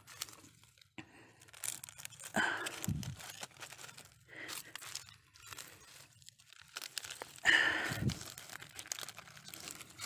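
Dry palm-frond mulch crackling and rustling underfoot, in irregular crackles, with two louder rustles about two and a half and seven and a half seconds in.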